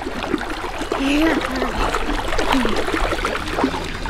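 Shallow pool water splashing and lapping as a small child paddles through it, a steady watery wash, with faint voices in the background.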